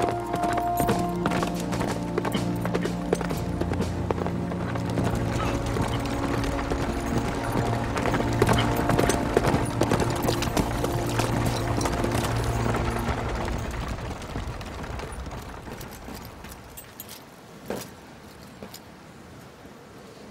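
Hoofbeats of a galloping horse over a film score of held notes. The hoofbeats and music fade down over the last several seconds.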